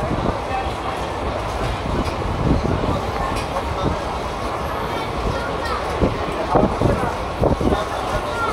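Passenger train running through a station, heard from on board: a steady rumble with irregular clatter of wheels over rail joints, several sharper clanks near the end, and voices in the background.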